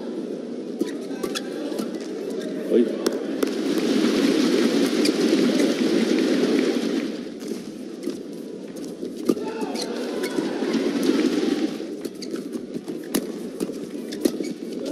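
Badminton rally in an indoor arena: sharp racket strikes on the shuttlecock and shoe squeaks over steady crowd noise. The crowd cheers and claps twice, about three to seven seconds in and again around ten to twelve seconds in, as points are won.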